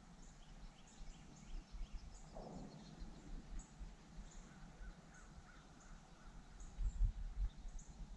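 Faint bird calls over a swamp: short high chirps repeating throughout, and one lower, falling call about two and a half seconds in. A few low thumps near the end come from the camera being handled.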